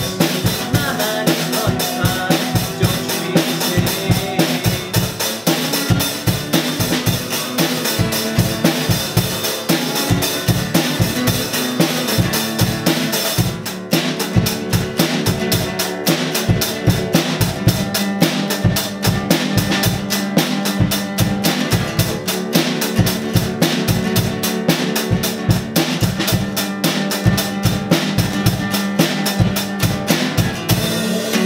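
Acoustic guitar strummed over a drum kit playing a steady rock beat, with no singing. After a brief drop about halfway through, the drumming gets busier.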